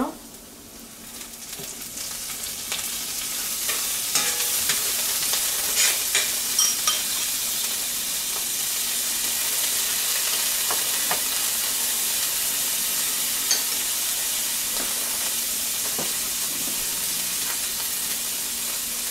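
Grated garlic and fresh oregano leaves sizzling in hot oil in a stainless steel pan. The sizzle swells over the first few seconds as the leaves go in, then holds steady, with a few sharp crackles along the way.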